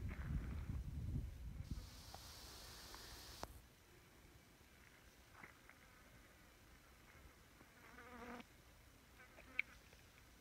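Bush flies buzzing around the microphone in brief passes, the clearest just past eight seconds in. A low rumble fills the first second or so and a hiss follows about two seconds in.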